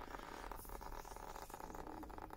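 Faint trickle and patter of water squeezed out of a weighted sawdust-and-coffee-grounds briquette mix, running off the press into a plastic tub.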